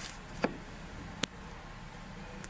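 Two sharp plastic clicks, about three-quarters of a second apart, as a hand handles a plastic windscreen-washer reservoir with its electric washer pumps, over a steady low background hum.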